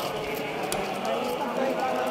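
A group of voices chanting together, with many pitches blending into steady held tones, over the scuffing footsteps of people walking on concrete.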